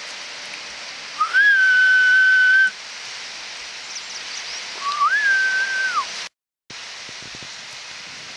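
Two long whistled notes, the first held steady for about a second and a half, the second rising at its start and falling away at its end, over a steady hiss of surf and wind. The sound cuts out completely for a moment near the end.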